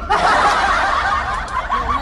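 Laughter, starting suddenly and loud, with several wavering voices overlapping, over the low rumble of the van.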